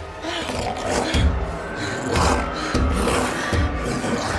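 Horror film soundtrack: a creature's roaring growl over a tense music score, with heavy low thuds about every three-quarters of a second from about a second in.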